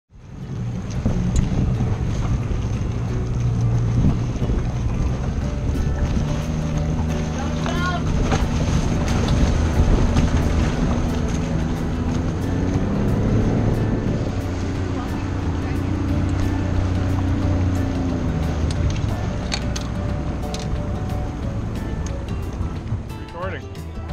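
Small motorboat's engine running under way, with wind rushing over the microphone and voices faintly in the mix.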